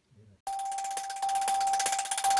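Near silence, then about half a second in a news channel's outro ident starts abruptly: a steady ringing tone over a shimmering high wash with faint regular ticks.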